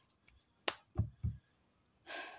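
A deck of tarot cards handled on a cloth-covered table after shuffling. One sharp click comes well before the middle, then two soft, dull thuds follow as the deck is tapped and squared against the table.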